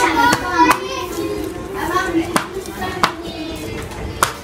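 Knife knocking against a cutting board as garlic cloves are chopped, with about five sharp, irregularly spaced strikes.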